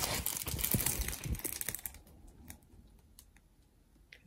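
Crackling and rustling of a diamond painting canvas and its glossy plastic cover film as it is lifted and handled, a dense run of small clicks that dies away about halfway through.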